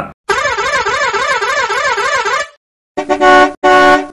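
A horn with a warbling, up-and-down pitch sounds for about two seconds. After a short gap a car horn honks twice in quick succession.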